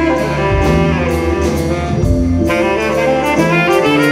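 Live soul band playing an instrumental passage: saxophone carrying the melody over electric bass, keyboard and a drum kit keeping a steady beat.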